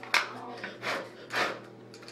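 A sharp click, then two short breathy puffs of breath while an eyeshadow compact is worked out of its plastic packaging.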